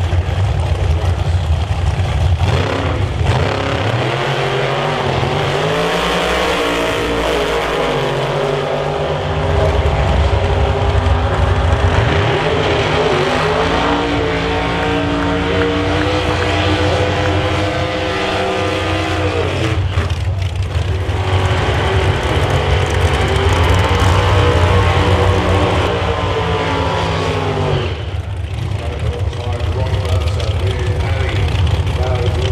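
Outlaw Anglia drag car engines revving hard at the start line during burnouts, the pitch sweeping up and falling back in several long revs over a constant engine drone.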